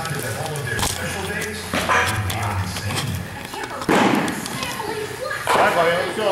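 Several sharp thumps and knocks echoing in a large hall, the loudest about four seconds in, with voices in between.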